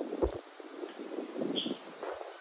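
Faint wind on the microphone outdoors: a low, uneven rushing hiss.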